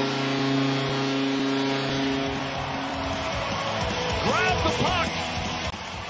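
Arena goal horn sounding a steady, loud chord over the crowd's cheering, cutting off about three seconds in. Crowd noise and music carry on after it.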